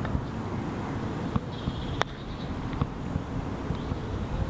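Steady low wind rumble on the microphone, with one sharp click about two seconds in: a putter striking a golf ball on the green.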